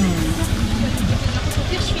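Motorcycle-sidecar tricycle's engine running steadily, heard from inside the sidecar, with a low constant rumble.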